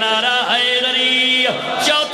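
A man's voice chanting a line of devotional poetry in long held notes, sliding from one note to the next.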